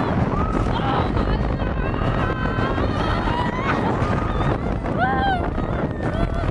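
Wind rushing over the microphone on a moving roller coaster, a steady rumble, with riders shrieking and laughing over it; a loud shriek comes near the end.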